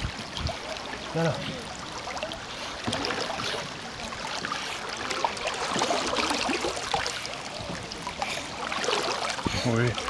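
Water splashing and lapping as a Bernese mountain dog swims and paddles through a river close by.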